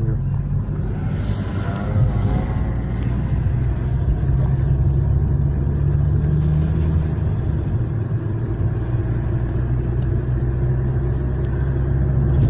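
A car's engine and road noise heard from inside the cabin while driving: a steady low hum.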